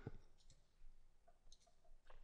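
Near silence: room tone with a few faint, short clicks scattered through it.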